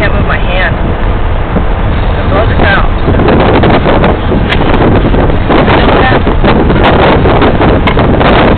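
Loud car-cabin noise with wind buffeting and overloading the microphone, and voices talking underneath.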